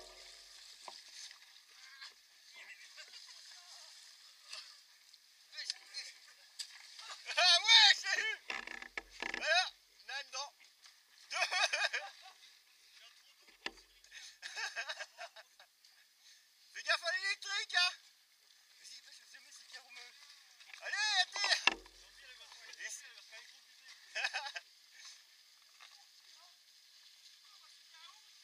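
Mountain bike tyres splashing through a shallow flooded lane, a steady watery hiss, with several short bursts of voices calling out.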